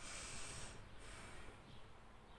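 A woman's breath drawn in through her nose, a short faint hiss lasting under a second that then fades as she holds it, the breath-hold she uses to calm a racing pulse.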